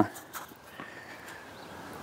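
Quiet outdoor background noise with a single faint tap about a third of a second in.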